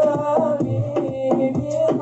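A cappella Islamic devotional song: male voices hold a sung melody over a beatboxer's vocal drum beat, with sharp beatboxed strokes several times a second.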